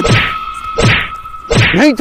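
Fight sound effects: three punch and slap hits, about one every three-quarters of a second, each a sharp crack with a falling swoosh. A steady high tone runs underneath, and a man shouts briefly near the end.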